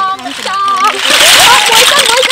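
A basketful of snails poured into a large metal bowl: starting about a second in, the shells pour in a loud dense rush of many small clicks and clatters.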